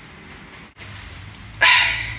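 A person sighs heavily near the end: one short, loud, breathy exhale, over a faint steady low room hum.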